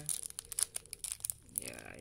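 Thin plastic snack wrapper crinkling and crackling in the hand as a chocolate sandwich biscuit is worked out of its opened single-serve pack.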